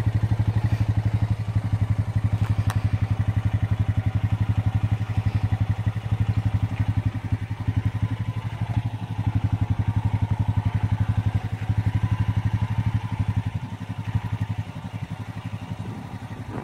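Honda Rancher ATV's single-cylinder engine idling steadily with a fast, even chug, a little quieter over the last few seconds. A single sharp click about three seconds in.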